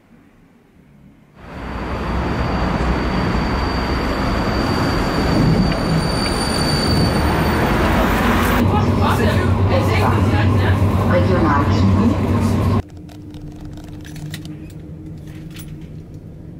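Running noise of a moving public-transport vehicle heard from inside, starting abruptly about a second and a half in, with voices over it in the second half. It cuts off suddenly near the end, leaving a quieter room with a low hum and faint clicks.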